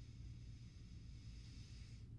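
Near silence: room tone, a faint steady hiss over a low hum.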